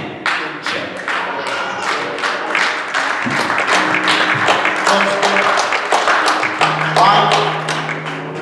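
Lively church music during a sermon: held chords under a quick, steady beat of sharp strokes, about two to three a second. A voice calls out over it near the end.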